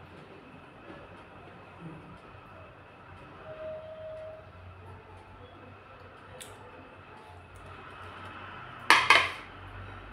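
Quiet kitchen background, then near the end two quick, loud clattering knocks of a plate being set down on a hard surface.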